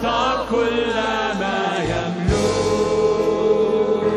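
A church worship team sings an Arabic hymn in several voices over a sustained instrumental accompaniment.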